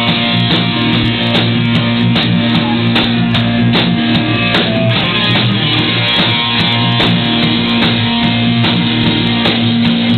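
Live rock band with Highland bagpipes playing over electric guitars and a drum kit. The pipes' steady drone holds underneath and the drums keep a regular beat.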